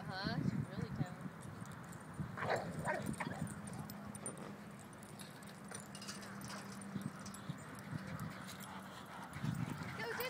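Dogs yipping and whining as they play, with short calls near the start and about two and a half seconds in. A steady low hum runs through the middle.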